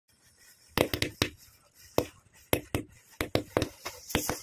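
Matchsticks standing in a row catching fire one after another, their heads flaring with a string of sharp crackling pops, irregular, a few each second.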